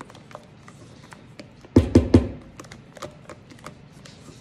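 Wooden spoon folding whipped topping into pudding in a stainless steel bowl, with soft scrapes and small clicks against the metal. About two seconds in come three quick, loud knocks of the spoon against the bowl, which rings briefly.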